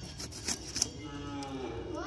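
A carp being cut on a boti, a fixed curved blade, with a few sharp scraping clicks, the loudest about half a second in. From about a second in, a drawn-out call dips and then rises in pitch over the background.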